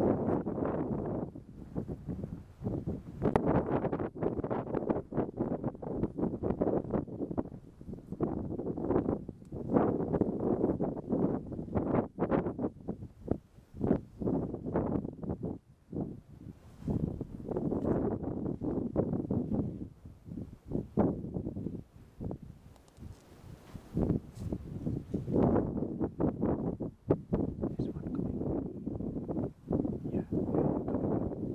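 Wind buffeting the microphone in uneven gusts, with rustling.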